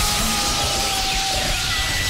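Cartoon electrocution sound effect: a loud, steady electrical crackle and buzz, with sustained tones under it. Near the end a high, steady tone comes in.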